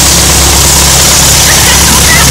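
Piston engine of a single-engine light aircraft running steadily as it taxis close by, under a loud, even rush of noise.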